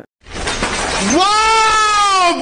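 A man's voice giving a long, loud, drawn-out cry after an abrupt cut. It starts about a second in, leaps up in pitch and holds one wavering note, with a bleat-like quality.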